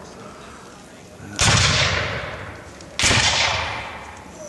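Two black-powder rifle-musket shots about a second and a half apart, each a sharp report trailing off in a long echo.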